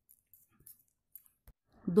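Faint, irregular light clicks of knitting needles as stitches are worked, several in about a second and a half; a woman's voice starts counting just before the end.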